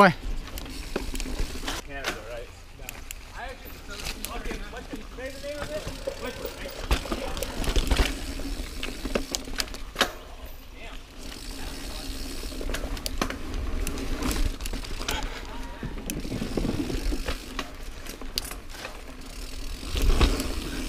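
Niner Jet 9 RDO mountain bike ridden along dirt singletrack: a steady rolling rumble with frequent sharp clicks and knocks as it goes over bumps.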